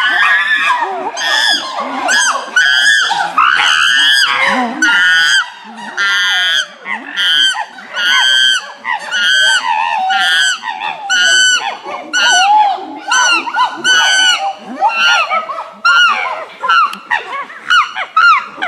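Chimpanzees screaming: a long series of loud, high, arching calls, about one and a half a second.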